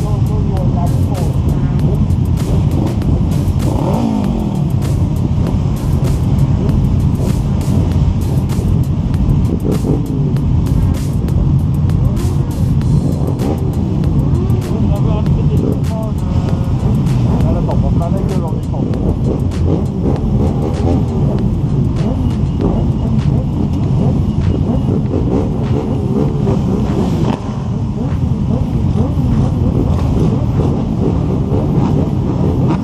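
Motorcycle engines of a large stationary group running together as a steady low rumble, with occasional rises and falls in pitch as riders blip their throttles. People's voices can be heard mixed in.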